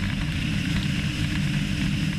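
Ilyushin Il-76 transport aircraft in flight with its rear cargo ramp open, its four turbofan engines and the airflow making a steady deep drone with a fainter, higher whine.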